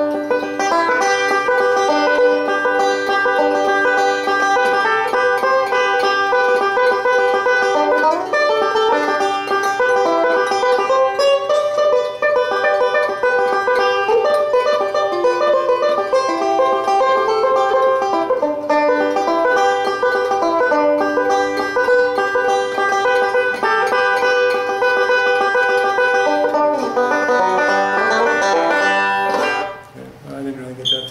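1927 Gibson TB-3 resonator banjo with its original no-hole tone ring, converted to five-string with a Frank Neat neck, played solo in bluegrass style. It is a fast, continuous stream of bright picked notes that stops just at the end.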